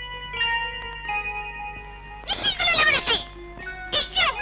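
Film background music: a slow melody of held notes stepping from pitch to pitch, then a loud, strongly warbling high line a little past two seconds in.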